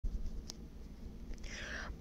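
Faint handling noise from a handheld phone, with a single sharp click about half a second in and a short breathy hiss near the end.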